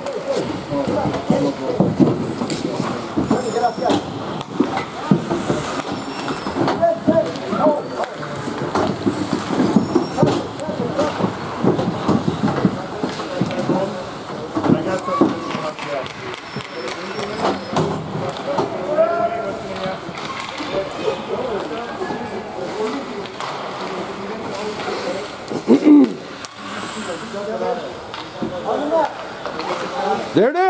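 Indistinct, overlapping voices and shouts of hockey spectators and players during play.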